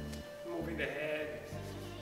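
Background music: held melodic notes over a changing bass line.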